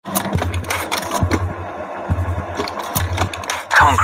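Promo-video soundtrack: a low bass pulse repeating roughly once a second under a dense, engine-like mechanical noise, with a louder swell near the end.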